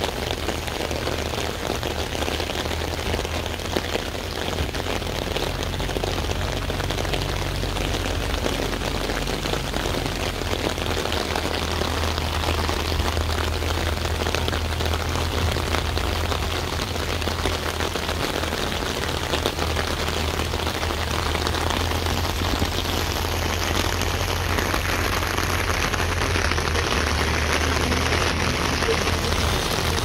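Steady rain falling and pattering on surfaces, with a low steady hum underneath.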